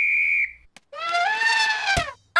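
A referee's whistle gives one steady, shrill blast lasting about a second, starting the game. About a second in, a high pitched call rises and is held, and a sharp click comes just at the end.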